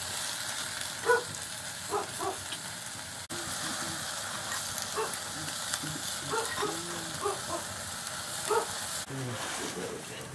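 A steady hiss of nettle leaves sizzling in a metal wok over a wood fire, with several short calls breaking in, the loudest about a second in and near the end.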